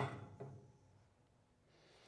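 A man's brief voiced exhalation at the start, with a fainter one about half a second in, then near silence.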